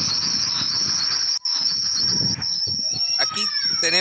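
A steady high-pitched chirring hiss over a video-call line, with faint indistinct background mumble. The audio drops out briefly about a second and a half in, and a voice starts near the end.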